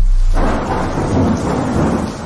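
A thunderstorm sound effect: a low thunder rumble with steady rain. The rain noise swells in about half a second in.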